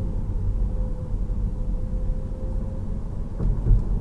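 Road and tyre noise inside the cabin of a 2019 Tesla Model 3 driving at city speed: a steady low rumble, with a faint steady tone that fades out after about three seconds.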